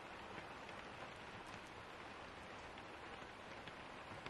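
Faint, steady rain, a soft even hiss with scattered light drop ticks.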